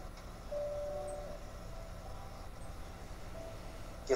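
Faint low background hum, with a brief faint steady tone about half a second in and another short one near the end.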